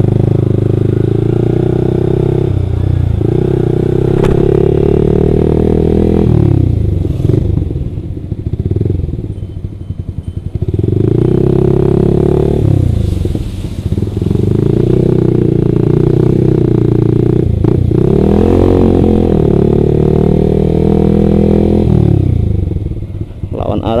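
Yamaha R15 V3's single-cylinder engine, through an aftermarket exhaust, pulling at low speed. The engine note eases off and picks up again several times as the throttle is closed and reopened.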